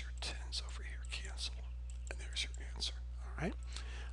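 A man whispering under his breath in a few short, soft hissy bursts, with one quick rising sound near the end, over a steady low electrical hum.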